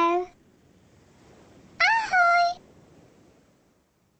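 Two drawn-out, meow-like vocal calls from a cartoon character: one sliding down in pitch and ending just after the start, and another about two seconds in that rises, dips, then holds a steady note for about half a second.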